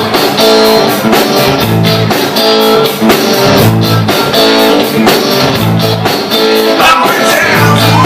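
A live blues-rock band playing: electric guitars, electric bass and drums, with a steady beat.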